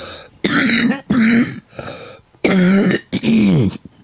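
A man coughing and clearing his throat in a run of about five coughs, each under half a second, one of them fainter than the rest.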